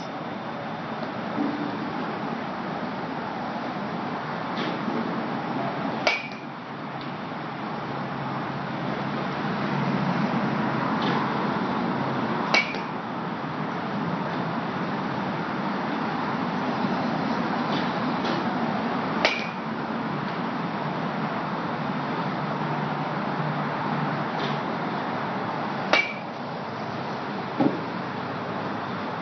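A bat hitting pitched balls: four sharp strikes with a short ringing ping, evenly spaced about six and a half seconds apart.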